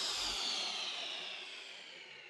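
Electronic dance music's decaying noise sweep: a hissy wash sliding downward in pitch and fading out, the tail of a loud hit in the track.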